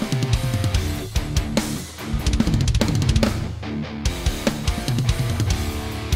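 Progressive metal played on an electronic drum kit, with fast kick, snare and cymbal hits over an electric guitar riff and no bass in the mix. The cymbals drop out for a moment just past the middle while the guitar holds its notes.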